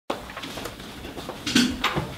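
Scattered light clicks and knocks of papers and small objects being handled at a lectern and table, with a louder clatter about one and a half seconds in.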